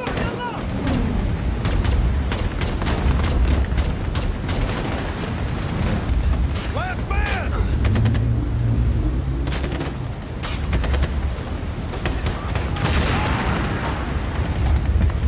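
Battle sound from a war film's soundtrack: rapid bursts of rifle and machine-gun fire, many sharp shots throughout, over a heavy low rumble with booms.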